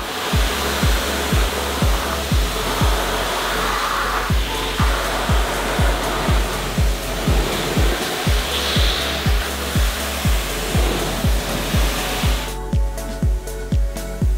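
Pressure washer spraying a jet of water onto a car's bodywork: a loud, steady hiss that cuts off near the end. A background music track with a steady beat plays under it throughout.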